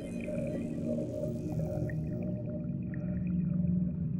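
Abstract ambient soundscape: layered low droning tones over a rumbling bed, swelling slightly near the end.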